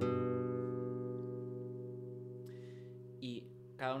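Nylon-string classical guitar: a two-note interval of a third plucked once and left to ring, fading out over about three seconds.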